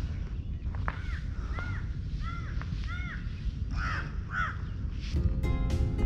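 A crow cawing, a run of about seven calls spaced roughly half a second apart. Background music starts near the end.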